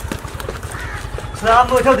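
A woman crying out in distress in a high, wavering voice, calling "Chaudhry!", which starts about a second and a half in after low background noise.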